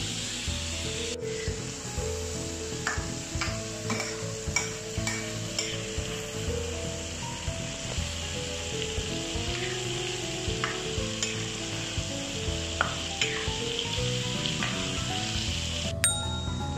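Shell-on prawns deep-frying in hot oil in a wok, a steady sizzle as they cook until the shells turn crisp. A metal spatula stirs them, giving scattered light clicks and scrapes against the wok.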